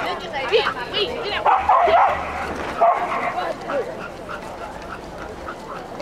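A dog barking several times, the loudest barks about one and a half to three seconds in, with voices in the background.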